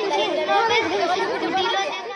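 Speech only: a girl's voice through a microphone, with children chattering.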